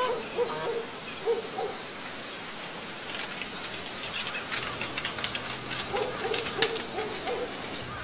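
A bird giving short, low hooting calls in a few quick groups, at the start and again about six seconds in, over faint high chirring and light crackles.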